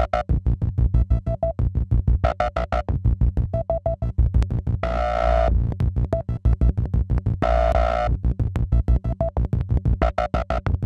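Clatters Sibilla synthesizer module, its envelope set to a very fast attack and release through the EXP-FX expander, playing rapid percussive synth notes to a fast even clock over a low pulse. Twice, about five and about seven and a half seconds in, the notes open into a longer, brighter, hissier tone for roughly half a second.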